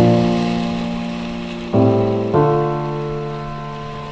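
Background music: sustained chords struck at the start, then new chords about a second and three quarters in and again a moment later, each slowly fading.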